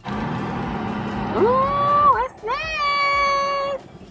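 A person's voice holding two long, high vocal notes, each sliding up at the start and then held level, the second one longer.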